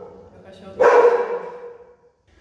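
A dog barks once, loud and sharp, a little under a second in, the bark ringing off in a small tiled room.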